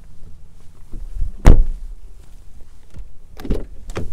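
The rear door of a 2023 Volvo XC40 being shut with one heavy thump about a second and a half in, then latch clicks and knocks near the end as the front door is opened.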